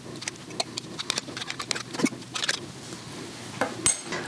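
Irregular light clicks and taps of a metal fork against an opened sardine tin and a ceramic plate as sardines are lifted out of the tin onto the plate.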